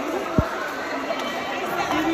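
Chatter of a market crowd: several people talking at once around the stalls, none clearly in front, with a brief low thump about half a second in.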